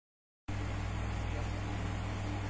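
Silence for about half a second, then a steady low hum with hiss: the background noise of a room.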